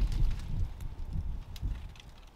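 Uneven low rumble of wind buffeting the microphone, easing off over the two seconds, with a couple of faint clicks.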